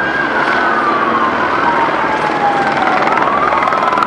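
Emergency vehicle sirens wailing, two overlapping tones slowly rising and falling, over a loud steady din.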